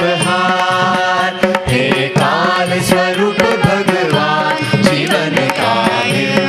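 A Carnatic devotional song performed live: voices singing a gliding melody, accompanied by veena and hand drums.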